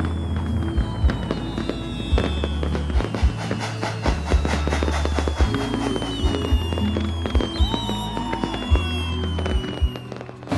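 Music soundtrack with deep bass notes that stop and start, dense sharp crackling clicks throughout, and thin whistling tones gliding slowly downward.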